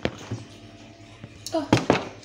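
A few sharp knocks from handling, a light one at the start and two loud ones close together near the end, with a woman's short "oh" just before them.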